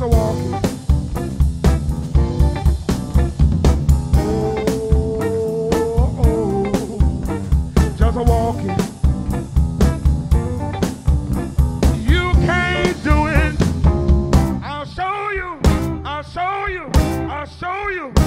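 Live blues band playing an instrumental passage: drum kit and bass guitar keep a steady groove under a lead line that holds one long note, then bends and wavers in the last few seconds.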